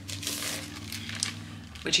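Clear cellophane packaging crinkling as a stack of pearlescent card sheets is slid out of it, an irregular papery-plastic rustle.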